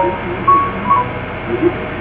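A pause in a narrow-band, phone-quality recording of speech: steady background hiss and hum, with a few short faint tones and faint murmur-like traces.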